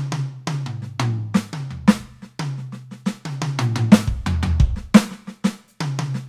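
Electronic drum kit played with sticks: single strokes moving around the snare and toms with changing dynamics, the toms sounding at stepped-down pitches, with bass drum hits underneath.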